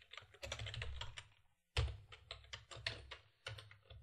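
Typing on a computer keyboard: quick runs of keystrokes with a short pause about a second and a half in.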